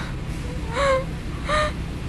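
Two short, breathy gasps with a whimpering rise in pitch, about a second in and again near the middle, over a low rumbling drone, in the creepy ending of a dark, zombie-inspired track.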